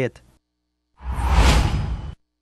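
Broadcast transition whoosh for a news graphic wipe: a swell of rushing noise about a second long, starting about a second in, peaking midway and cutting off suddenly.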